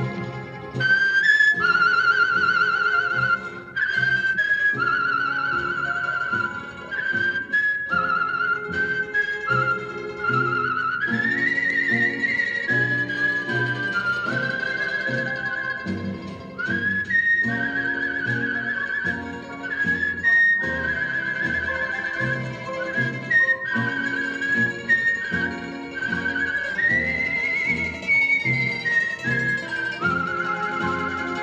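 A champion whistler whistling the melody of a blues song, each held note with a quick vibrato and sliding between notes, over a band accompaniment. The whistled line rises to higher phrases twice, midway and near the end.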